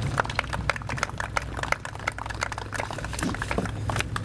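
Scattered applause from a small group: a few people clapping irregularly, over a steady low rumble.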